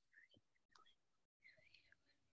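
Near silence on a video call, with only a few very faint scattered traces of sound.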